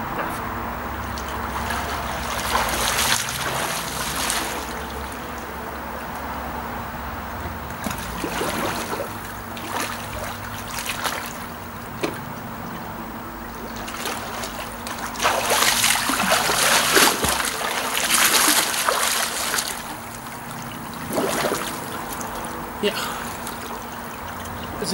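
Water splashing from a swimmer doing front crawl, in several bursts of strokes with quieter stretches between.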